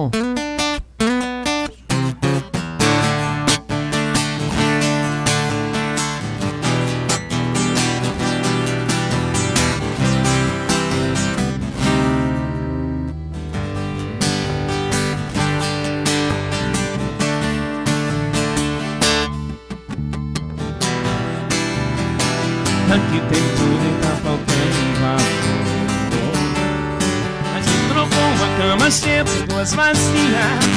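A live band playing an instrumental passage without vocals.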